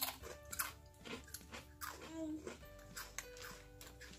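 Crisp crunching of shrimp-flavoured ridged chips being bitten and chewed, in short irregular crackles over soft background music with held notes.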